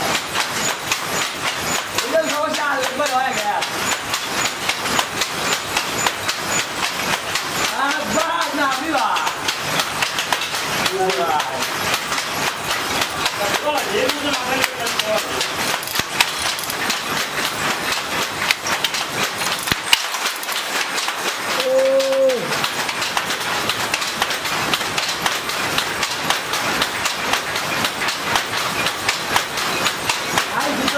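Wooden fly-shuttle hand looms at work: a dense, steady clacking of shuttles and beaters, with voices now and then.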